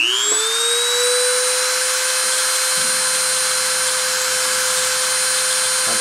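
Dremel rotary tool spindle spinning up to 30,000 RPM, finishing its rise in pitch in the first half-second, then running as a steady high whine with a sterling silver wire held in its collet. A faint low hum joins about three seconds in.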